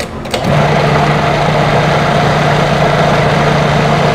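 A food processor's motor runs steadily, starting about half a second in, as it blends a thick mixture.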